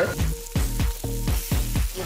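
Food frying and sizzling in a hot cast iron skillet, under background music with a steady beat of about four thumps a second.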